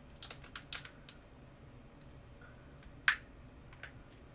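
Crab shell cracking as it is broken apart to get at the meat: a quick run of sharp cracks in the first second, then a single louder crack about three seconds in and a smaller one just before the end.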